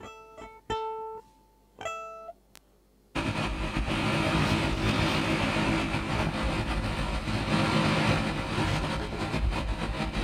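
A violin plays a few short, separate notes; about three seconds in, a loud, dense electronic noise track cuts in suddenly and keeps going.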